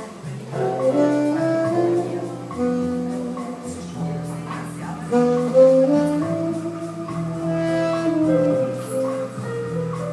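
Saxophone playing a slow jazz melody of long held notes, some sliding into each other, over sustained keyboard chords underneath.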